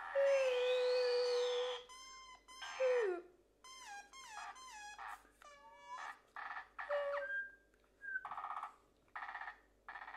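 Electronic bleeps and synthesizer-like tones: a long note that sweeps up and back down near the start, then short stepping and sliding notes and separate blips with gaps between them.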